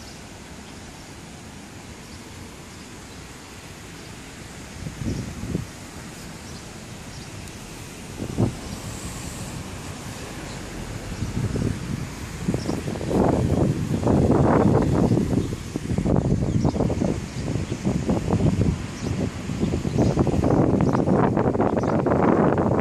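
Outdoor ambience: a steady low background that turns into irregular gusts of wind buffeting the microphone, louder and more frequent in the second half.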